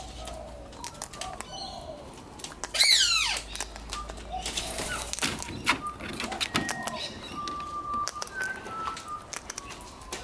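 Sulphur-crested cockatoo eating seed from a hand, its beak cracking the seed in many small clicks. About three seconds in, a loud bird squawk falls steeply in pitch, and short whistled bird calls come near the end.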